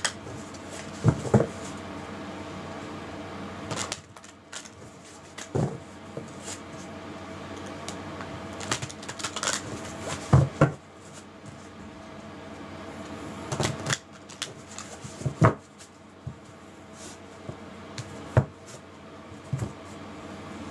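A deck of oracle cards being shuffled and handled by hand: soft card rustles with sharp taps and slaps at irregular intervals, the loudest a few seconds apart, over a faint steady hum.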